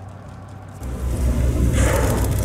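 Low rumble of a boat's engine under a rush of wind and water noise, growing much louder about a second in, with a brief hiss near the end.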